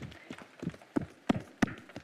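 Open hands tapping on chests, Tarzan-style: an irregular patter of soft thuds, with a few sharper, louder ones near the end.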